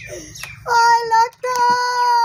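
A woman wailing aloud in long, high-pitched held cries, two drawn-out notes with a short break between them.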